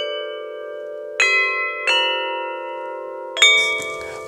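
Homemade tubular bells cut from metal electrical conduit, struck with wooden mallets: three strikes, about a second in, shortly after and near the end, each ringing on in several overlapping tones over the last.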